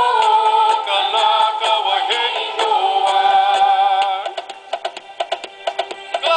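Recorded song in Hawaiian playing: voices singing over percussion. A little past four seconds the singing drops away and quick, quieter percussion hits carry on.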